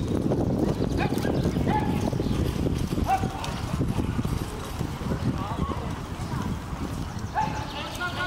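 Hoofbeats of a pair of carriage horses driven fast through a marathon obstacle on soft ground, densest in the first half and thinning as they move away. Short shouted calls cut in several times, the driver or groom calling the horses on.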